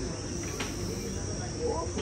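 Insects droning steadily at a high pitch, with faint voices coming in near the end.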